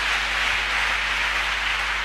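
Large congregation applauding, a steady clatter of many hands.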